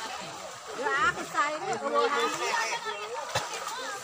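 Shouts and chatter of several people, some high-pitched, with splashing in shallow muddy water as people wade and grope for fish by hand.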